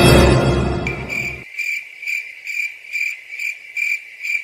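Cricket chirping sound effect, a steady high chirp pulsing about two to three times a second, coming in as dramatic music fades out in the first second and a half.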